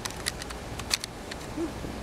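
Several small sharp clicks and taps of plastic razor blade cartridges being handled and slid out of the side of their tray.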